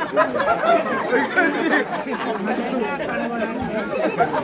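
Many voices talking over one another: a crowd of young men chattering, with no single speaker standing out.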